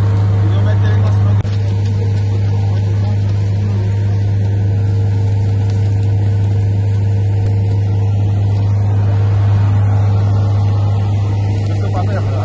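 Fire engine's diesel engine running at a steady speed, a loud low hum.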